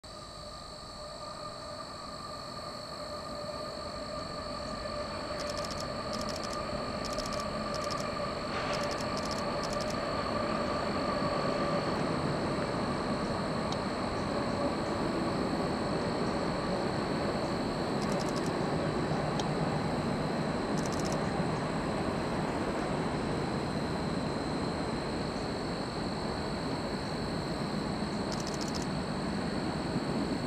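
Distant freight train rolling across a steel trestle: a steady rumble of wheels and cars that fades up over the first several seconds and then holds level. A steady high whine runs throughout, and a steady two-note hum fades away about twelve seconds in.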